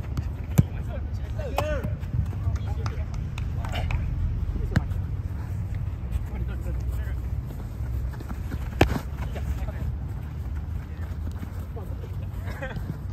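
Youth soccer play on artificial turf: the ball is kicked with sharp thuds a few times, the loudest about half a second in and near nine seconds, while young players shout and call out. A steady low rumble sits under it all.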